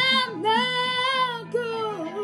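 A girl singing long held, wavering notes over a recorded backing track, two sustained notes of about a second each with a short dip between them.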